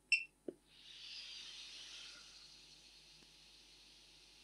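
A short electronic beep from the Riden RD6006 bench power supply as its output button is pressed, and a brief click half a second later. Then, as power reaches the AKK Alpha 4 video transmitter, a soft hiss swells about a second in and settles to a faint steady whir: its built-in cooling fan starting up.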